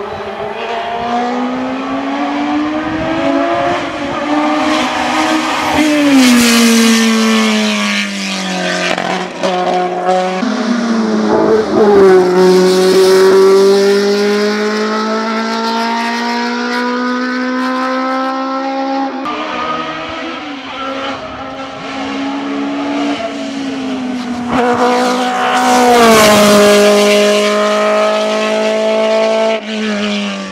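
Osella PA9/90 sports-prototype race engine at full effort up a hill-climb course. The pitch climbs under power and falls sharply several times as the car slows for the bends, then rises again each time.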